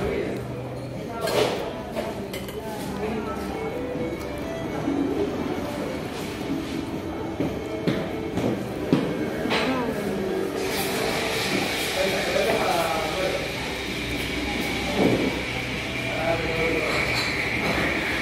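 Metal forks clinking against a plate in scattered sharp clicks, over a murmur of voices. A steady high-pitched tone comes in a little past halfway and holds.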